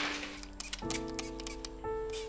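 A hand trigger spray bottle misting seedlings in short, clicky squirts, several in quick succession, over soft background music with held notes.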